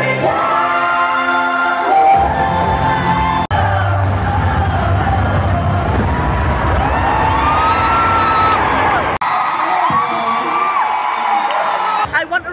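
Live pop concert music with women singing, loud in an arena. The sound breaks off abruptly about three and a half and nine seconds in.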